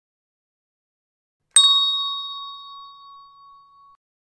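A single bright bell-like ding, struck once about a second and a half in, ringing out with a few clear tones that fade slowly before cutting off abruptly near the end. Silence before the strike.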